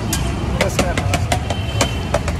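Street background: a steady low rumble of road traffic, with faint voices and scattered sharp clicks over it.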